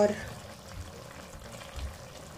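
Chicken pieces with tomatoes and onion simmering in their own liquid in a karahi, a steady soft bubbling.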